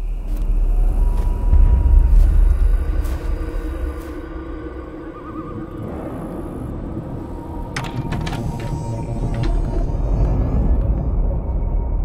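Dark trailer sound design: a deep low rumble swells in, peaks about two seconds in, eases off, then builds again, with a few sharp clicks about eight seconds in.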